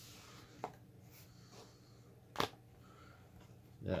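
Handling of a plastic tablet against its keyboard case: a faint tap about half a second in, then one sharp click a couple of seconds in as the tablet is seated onto the keyboard dock's connector.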